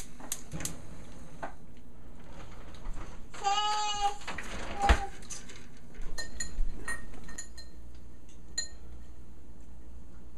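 Kitchen utensils knocking and clinking against a stainless saucepan, with a sharp knock about halfway and a run of light ringing clinks after that. A short pitched bleat-like squeak is heard just before the knock.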